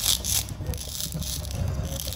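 Halves of a plastic toy corn cob being pressed and rubbed together by hand at their cut join, a run of short scratchy crackles several times a second.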